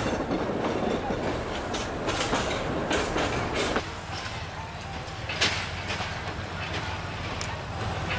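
A passenger train running on the rails, with irregular clicks and knocks over a steady rumble. The sound changes abruptly about four seconds in, the lower rumble thinning out.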